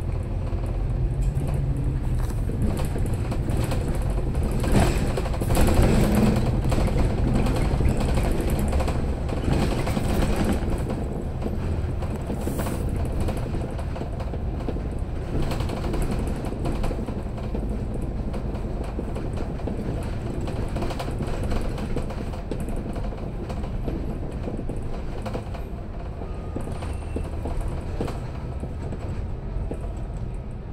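Inside a double-decker bus under way: a steady low rumble of engine and road noise with frequent knocks and rattles, loudest for several seconds near the start as the bus pulls away, then settling into an even cruise.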